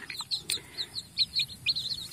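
A brood of young chicks peeping: a quick run of short, high peeps, each falling in pitch, about five a second.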